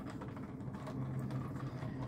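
Screwdriver turning a screw out of an autoharp's metal end cover, with faint small clicks and scrapes of metal on metal, over a steady low hum.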